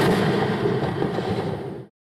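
Rocket exploding on its launch pad: a dense, crackling explosion roar that holds steady, fades slightly, and cuts off suddenly just before the end.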